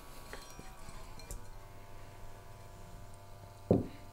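A few faint metallic clinks, from a gas regulator being handled and fitted onto an H2S calibration gas bottle, over a low steady hum.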